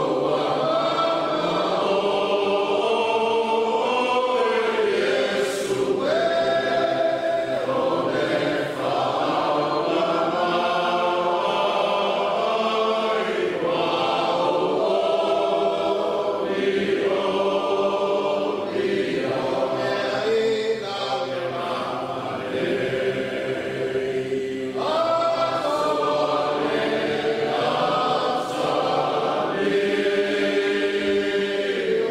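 A large group of voices singing together in a choir, with long held notes moving in slow phrases.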